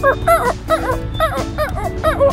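A quick run of short, high-pitched squeaky chirps, about four or five a second, a cute little-creature voice, over background music.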